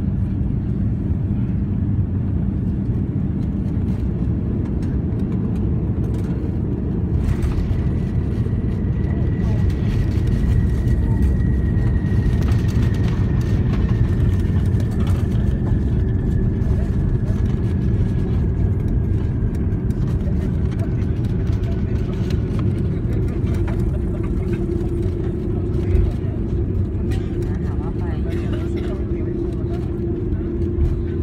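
Cabin noise of an Airbus A330-200 touching down and rolling out on the runway: a loud, steady low rumble of engines, airflow and wheels, with a knock about seven seconds in as the wheels meet the runway. The rumble grows louder from about ten seconds in as the aircraft brakes with its spoilers up, and a thin whine slides slowly down in pitch.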